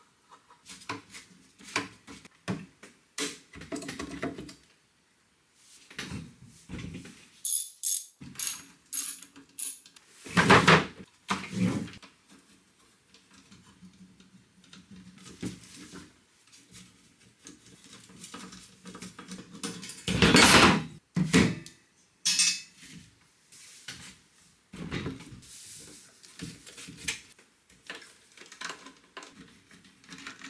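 Screwdrivers working the screws out of a Honda EM400 generator's metal case: irregular small clicks and scrapes of metal on metal, with a quick run of high clicks about eight seconds in and louder knocks about ten and twenty seconds in as tools and panels are handled.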